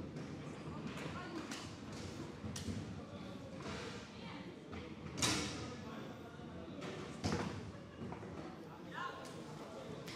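Foosball game in play: the ball and the players' rods knocking against the table, a few sharp knocks standing out, the loudest about five seconds in, over faint background voices in a large hall.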